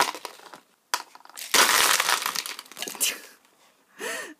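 Plastic markers, paint tubes and small bottles dropped onto a table, clattering against it and a plastic palette. There are single knocks first, then a dense burst of clatter about a second and a half in as a handful lands at once, and one more knock near the end.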